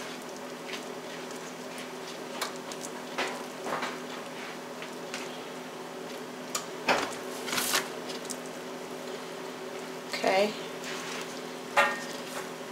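Soft, wet squishing and small handling noises as the skins are pulled off baked sweet potatoes by hand, over a steady low hum. A short voice sound comes about ten seconds in.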